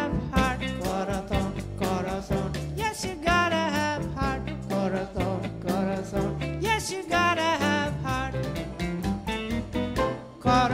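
Live jazz band with drums playing a swing number near its close.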